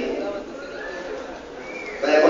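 Lull in a crowded hall: a low murmur of audience voices, with a faint short rising-and-falling tone near the end.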